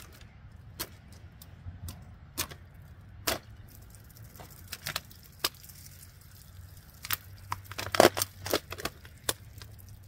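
Plastic water bottle crackling and popping as a serrated folding knife stabs and saws into it, with scattered sharp clicks and a quick run of louder cracks near the end. Water runs out of the punctures with a faint trickling hiss, the blade not sharp enough to cut cleanly through the bottle.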